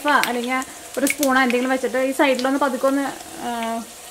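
Masala-coated potato slices sizzling as they shallow-fry in hot oil, with a few sharp clicks of a steel spatula on the pan near the start and about a second in as slices are lifted and turned. A person talks over the frying for much of the time.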